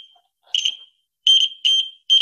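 Arduino-driven buzzer beeping in about four short, uneven bursts of one high tone, cutting in and out instead of sounding steadily. The buzzer's pin connections are poor: the wires were not stripped far enough.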